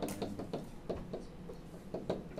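About eight light, irregular taps and clicks of a stylus on a writing surface as text is handwritten.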